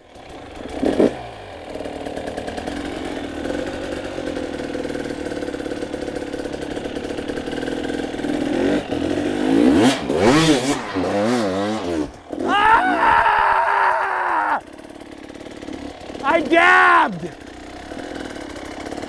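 Enduro dirt bike engine running steadily, then revving hard in repeated bursts about halfway through as the bike is hopped up a tall concrete wall. It holds high revs for a couple of seconds, then drops back to a lower, quieter run.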